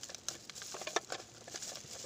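Faint, irregular rustling with small clicks.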